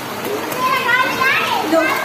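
Young children's high-pitched voices calling and chattering as they play in a pool.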